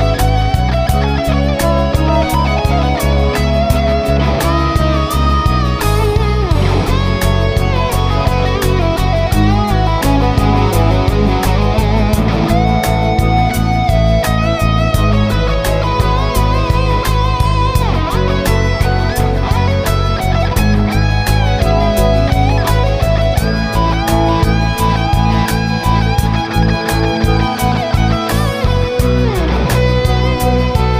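Electric guitar playing a melodic lead line, with notes that bend and glide in pitch, over a backing track of bass and a steady drum beat.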